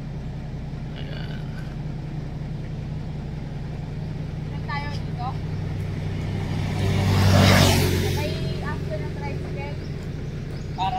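A vehicle passing close by on the road, its noise swelling to a peak about seven and a half seconds in and then fading. Under it runs a steady low engine hum.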